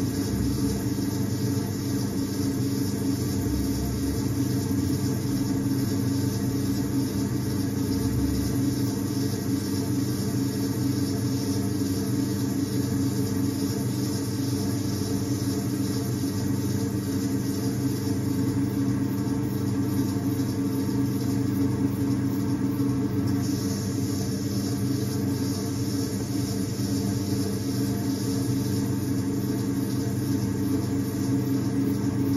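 Electric potter's wheel motor humming steadily as the wheel spins, with wet clay rubbing softly under the potter's hands as a vase is shaped.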